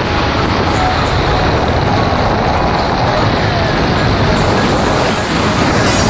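Steady wind rushing and buffeting over a helmet-mounted camera's microphone during a fast speedflying descent close to the snow.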